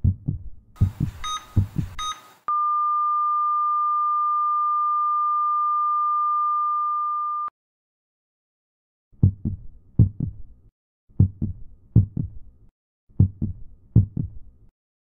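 Heart-monitor sound effect: heartbeat thumps with a short electronic beep on each beat, then one long steady flatline tone of about five seconds that cuts off suddenly. After a pause of silence the heartbeat thumps come back, in groups, without the beeps.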